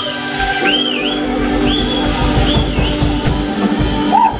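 A live rock band playing, acoustic and electric guitars over drums. High whistle-like tones rise and fall over it, repeating roughly once a second through the first three seconds.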